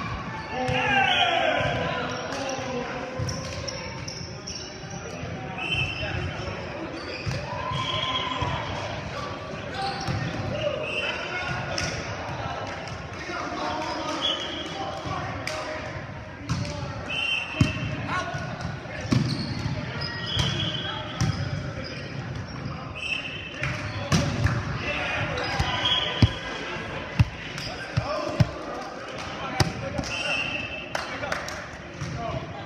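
Indoor volleyball play in a large echoing gym: players calling out, sharp slaps of hands hitting the ball and the ball striking the floor, and short high-pitched sneaker squeaks on the hardwood court.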